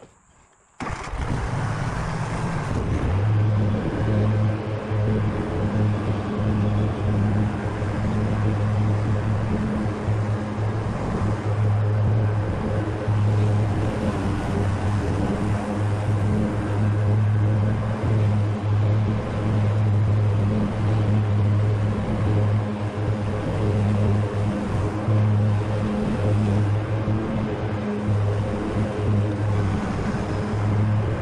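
Grasshopper 125V61 zero-turn riding mower running steadily with its deck cutting tall grass: a steady engine hum over the blades' whir. The sound cuts in abruptly about a second in.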